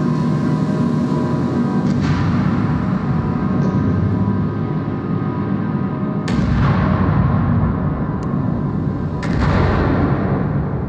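Dark ambient soundtrack: a dense low drone with steady held tones, struck by three heavy booms that die away slowly, about two, six and nine seconds in.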